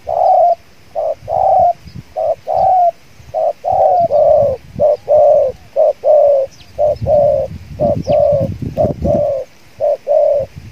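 Spotted doves cooing in a steady run, short and longer coos alternating at about two a second, each coo dipping slightly in pitch. Dull low thuds sound under the cooing between about seven and nine seconds in.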